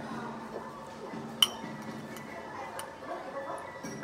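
One bright, ringing clink of tableware at the table about a second and a half in, followed by a few lighter taps, over steady restaurant background noise.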